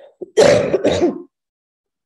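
A woman clearing her throat: two short, loud bursts in quick succession about half a second in.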